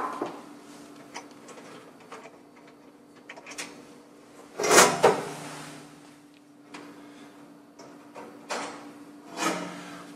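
Chrome wire rack supports clicking and rattling against the stainless-steel oven cavity as their thumb screws are undone and they are lifted out. There is one loud metallic clatter about halfway through and a few lighter knocks near the end, over a faint steady low hum.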